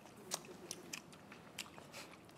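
Faint, scattered small clicks and taps, about five in two seconds, from people eating from food containers with utensils and handling packaging.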